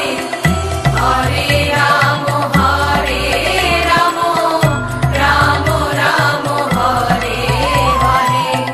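Bengali Hindu devotional kirtan song: a chant-like melody, sung or played in repeated phrases, over a steady low drum and bass beat.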